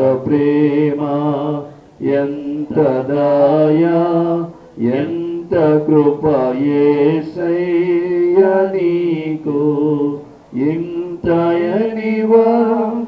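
A man singing a slow devotional song alone, holding long notes that slide in pitch, in phrases broken by short pauses for breath.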